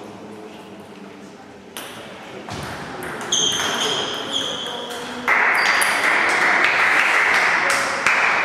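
Table tennis ball clicking off bats and table in a rally, each hit with a short high ping. About five seconds in a loud, even rushing hiss starts suddenly and covers the rest.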